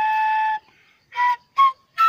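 Self-made bamboo flute playing a melody: a held note that stops just over half a second in, a short pause, then two short higher notes.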